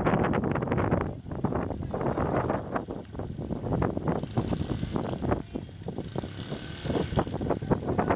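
Wind buffeting the microphone: an uneven, gusty rumble with many quick surges.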